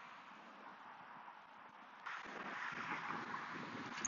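Wind buffeting the microphone outdoors: a faint background for the first half, then a sudden gust of rough noise about halfway through that carries on.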